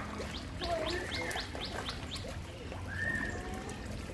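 Birds chirping: a rapid, even series of short high chirps, about four a second, with a few longer whistled notes mixed in.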